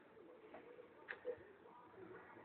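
Near silence, with faint, distant, wavering low sounds and a light click about a second in.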